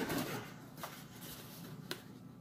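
Faint handling of a small cardboard box as it is lifted out of a larger box, with two light taps.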